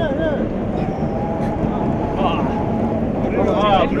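Steady low drone of a boat's engine running while the crew fish, with voices talking over it and wind and water noise on the microphone.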